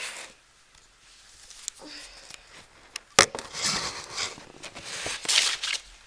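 A sharp knock about three seconds in, then tissues rustling as they are pulled from a cardboard Kleenex box.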